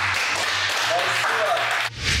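A small group clapping, with a few faint voices under it. The clapping cuts off abruptly near the end.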